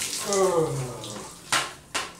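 Water poured from a plastic basin over a man's head and body, splashing in a small tiled shower stall during a bucket bath. He lets out a drawn-out cry that falls in pitch, and a sharp splash comes about a second and a half in.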